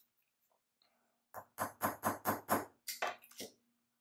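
Nylon-headed hammer tapping a wire loop against a bench block, about eight quick taps in two seconds starting a little over a second in, work-hardening the craft wire so the loop holds its shape.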